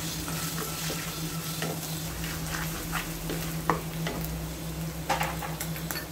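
Sliced onions frying in hot oil in a pot, sizzling steadily, with a spatula stirring through them and now and then clicking against the pot. A steady low hum runs underneath.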